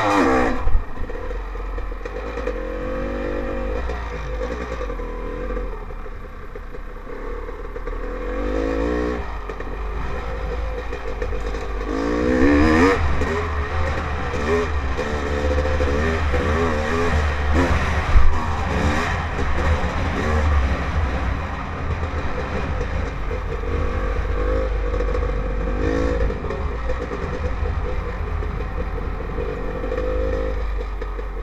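Dirt bike engine revving up and falling back again and again as the bike is ridden over a dirt track, with a heavy low rumble of wind on the helmet-mounted microphone. A single sharp knock comes a little past halfway.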